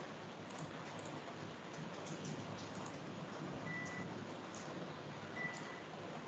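Faint steady background hiss from an open microphone on a video call, with scattered faint clicks and two short, high beeps about a second and a half apart in the second half.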